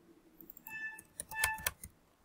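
Computer keyboard typing: a quick run of keystrokes from about half a second in until just before the end, a few of them with a brief ringing tone.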